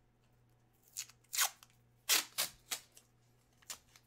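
Packaging being opened by hand: about six short, sharp rasps spread over three seconds.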